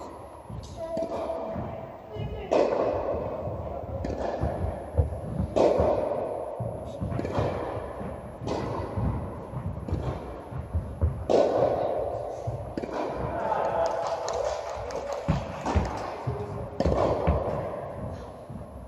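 A tennis rally on an indoor court: rackets striking the ball every one to three seconds, each hit a sharp pop followed by a long echo in the large hall.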